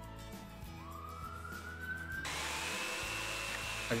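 A corded jigsaw's motor whine that climbs in pitch as it spins up. About two seconds in it switches to a higher, steady whine with a hiss over it, louder than before, as the blade works into a plastic milk crate.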